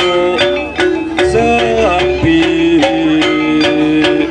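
Javanese jaranan ensemble music: a sliding, wavering melody over regular drum strokes about three times a second.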